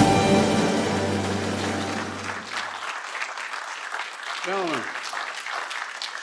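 Band music ends on a held chord that dies away about three seconds in, over steady applause from the room. The clapping carries on after the music stops, with a brief voice call a little past the middle.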